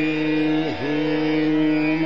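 Male Indian classical vocalist holding a long sung note in Raag Amritvarshini, with a quick downward glide and return about three-quarters of a second in. Tanpura drone and harmonium sound underneath.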